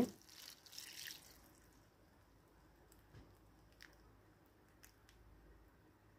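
Water sprinkling softly from a plastic watering can's rose onto potting soil for about the first second, then near silence with a few faint drips.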